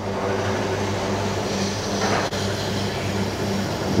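Petrol running from a pump nozzle into a Honda NC750's fuel tank, a steady rush over the low, even hum of the petrol pump's motor, with a single click a little over two seconds in.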